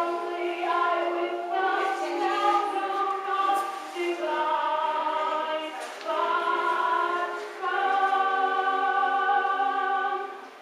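A choir singing: several voices holding long notes together, moving to a new chord every second or so, with a short break about six seconds in and another about a second and a half later.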